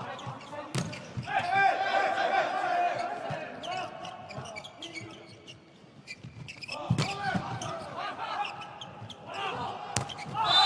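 Volleyball rally: sharp smacks of the ball being struck, the loudest about a second in and again about seven seconds in, with players calling and shouting to each other between the hits.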